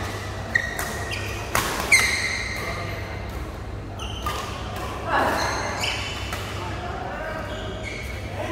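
Badminton rackets striking a shuttlecock, a few sharp hits in the first two seconds, with players' voices, all ringing in a large echoing hall.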